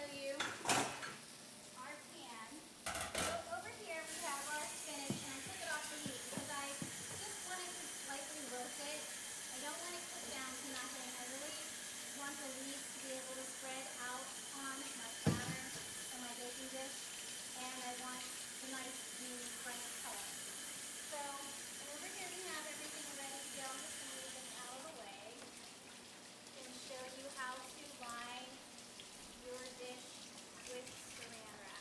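A kitchen tap running steadily into a sink, turned on about four seconds in and off about twenty-five seconds in, while roasted peppers are rinsed in a colander. Pans and utensils clank a few times, with the sharpest knocks near the start and one about halfway through.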